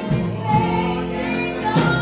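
Live gospel song: voices holding sung notes over a church band of electric guitar, keyboard and drums, with a few drum and cymbal strikes.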